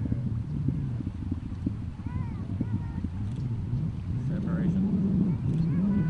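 Faint, scattered voices over a low, steady drone whose pitch wavers slowly.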